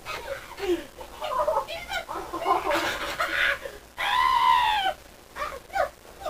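Wordless shrieks and grunts from people struggling in a staged fight, then one long, high scream about four seconds in that rises and then falls in pitch.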